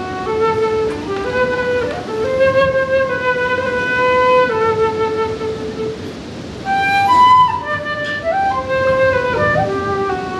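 Native American flute playing a slow melody of long held notes, rising to a higher, louder phrase about seven seconds in before settling back down.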